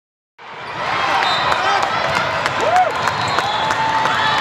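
Indoor volleyball rally on a hardwood court: the ball being struck and sneakers squeaking in short rising and falling chirps, over the chatter of a crowd in a large hall. The sound starts about half a second in.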